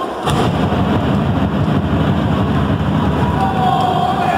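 A wrestler crashing down on the wrestling ring: a sudden heavy impact about a third of a second in, then a loud, low, sustained rumble.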